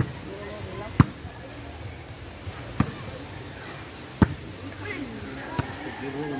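Volleyball struck by hand during a rally: a series of sharp slaps roughly every one and a half seconds, the loudest about a second in, with faint voices in the background.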